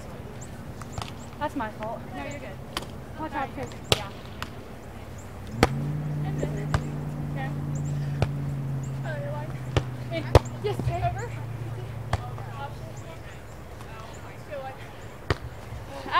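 A volleyball being struck by hands during a beach volleyball rally: several sharp slaps, a second or more apart. A steady low hum runs underneath from about six seconds in and fades out a few seconds later, with faint voices in the distance.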